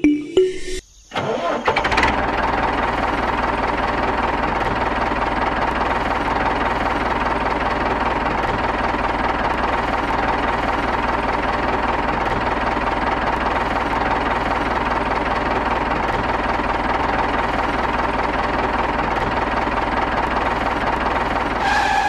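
Small motor of a miniature DIY toy tractor running steadily, starting up about two seconds in and holding an even level.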